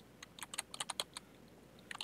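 A quick run of faint keystrokes on a computer keyboard, dense in the first second and thinning out after.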